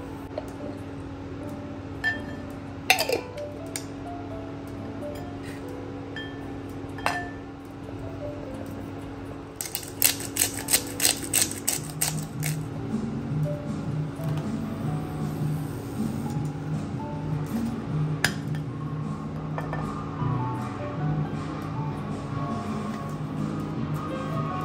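Background music, with a few light clinks against a glass bowl. About ten seconds in comes a quick run of about ten clicks from a black-pepper grinder.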